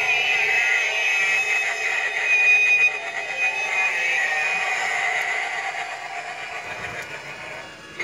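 Halloween hay bale popper animatronic playing its built-in spooky sound effect: a long, high, wavering sound that slowly fades over the last few seconds.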